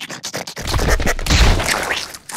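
Cartoon sound effect of rapid, scratchy clicking and scraping, with a low rumble under it through the middle.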